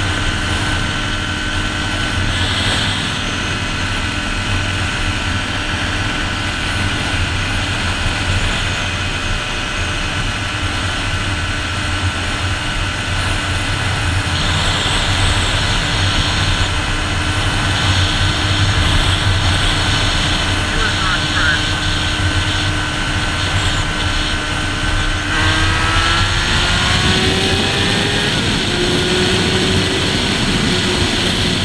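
2008 Honda CBR600RR inline-four engine holding a steady pitch at highway cruising speed under heavy wind rush. Near the end its pitch climbs as the bike accelerates hard.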